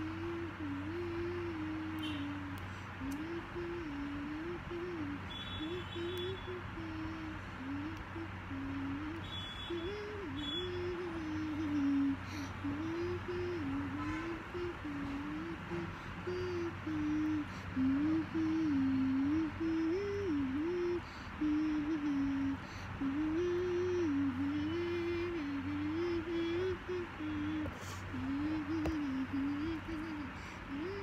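A slow, simple tune in a single melodic line, lullaby-like, stepping up and down in pitch without a break, over a steady low background hum.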